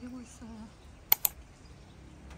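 Two sharp clicks in quick succession about a second in, just after a voice trails off.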